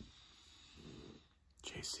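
A man's faint breathing through the nose with a short soft low murmur about a second in; speech starts near the end.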